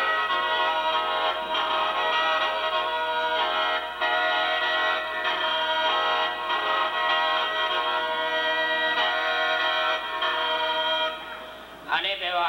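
Lao khaen, a free-reed bamboo mouth organ, playing a reedy melody over sustained drone chords. It has brief breaks in the breath and tails off shortly before the end.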